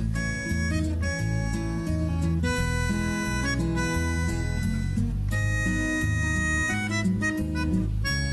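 Background music: an instrumental track with plucked guitar-like notes, a reedy melody line and a steady bass.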